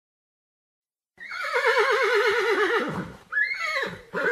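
Horse whinnying: a long, quavering call that slowly falls in pitch, starting about a second in, followed near the end by a second, shorter call that rises and falls.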